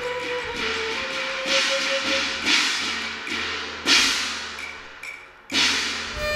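Cantonese opera ensemble in an instrumental interlude between sung lines: five percussion strikes about a second apart, each ringing away, over a faint held instrument note.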